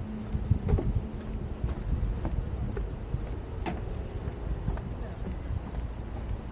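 Faint, high chirping of insects, repeating about three times a second, over a steady low rumble and scattered soft knocks of footsteps on a wooden boardwalk.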